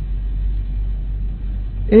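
Steady low hum in the background of a speech recording, during a pause in the talk; a man's voice starts again right at the end.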